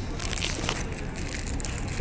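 Aluminium foil wrapping around a sweet bean cake crinkling and crackling as fingers and a paper knife work it open. It is a dense run of short, sharp crackles.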